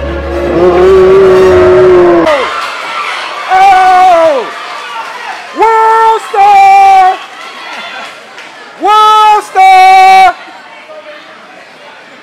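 Air horn blasts over crowd noise: one long blast of about two seconds, a shorter one that sags in pitch as it dies, then two quick pairs of short blasts.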